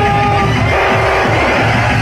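UK hardcore dance music playing loudly and continuously through a club sound system.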